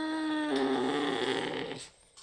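Domestic cat growling as she is petted: one long, low growl held on a steady pitch that turns rougher about half a second in and stops just before the end. It is the grumble of a grumpy cat that is unwell.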